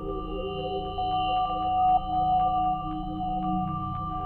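Experimental electroacoustic improvised music: several sustained tones held together over a low drone, with faint ticks about four a second.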